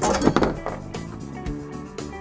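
A short burst of handling noise in about the first half-second as the Shift-N-Step's manual operating lever is taken out of its package inside the van doorway, over background music.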